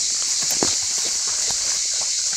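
Irregular snaps and rustles in dry reeds and brush beside a stream, as of something moving through the vegetation, over a steady high hiss.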